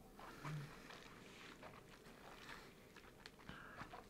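Near silence with faint sipping, swallowing and small mouth sounds from whisky being tasted from glasses, and a short low hum about half a second in.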